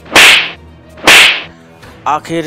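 Two loud whip-like swish sound effects about a second apart, each rising fast and fading over about half a second.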